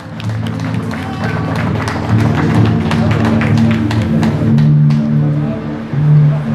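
Music with a steady beat and a sustained, shifting bass line, played loudly over the stage PA.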